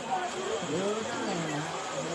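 Background voices of several people talking at a moderate level, with no music playing.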